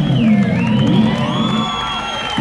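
A live rock band's song ending: the full band cuts out and the last chord rings on, with high sliding tones, as the crowd cheers and whoops.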